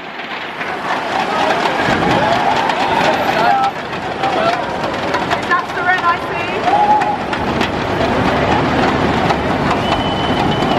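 A street crowd shouting and cheering over one another, many voices calling at once, as a slow convoy of large SUVs rolls past with its engine and tyre noise underneath.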